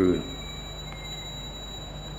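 A man's voice ends a word, then pauses; in the pause only the recording's steady background hiss and low hum remain, with a thin constant high-pitched whine.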